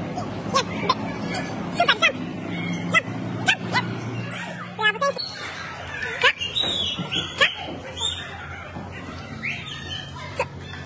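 Indistinct voices of young children and an adult, with many short, high-pitched chirp-like sounds scattered throughout.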